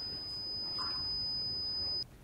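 Security system's alarm buzzer sounding one steady, high-pitched electronic tone. It has been set off by the system's accelerometer sensing a knock on the table.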